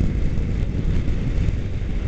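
Motorcycle cruising at freeway speed: a steady rush of wind on the microphone over low engine and road rumble.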